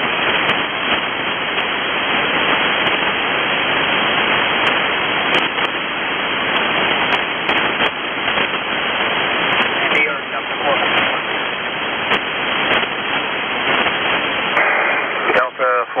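Static from a Winradio Excalibur Pro shortwave receiver on the 6577 kHz single-sideband aircraft channel: a steady hiss with the channel idle between transmissions, cut off sharply at the top like a narrow radio voice band. A weak voice shows faintly through the noise about ten seconds in, and a radio voice breaks through near the end. Thin sharp clicks come now and then.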